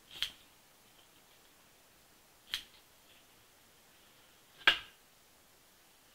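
Serrated scissors snipping through craft fur at its hide: three short, sharp snips about two seconds apart, the last the loudest.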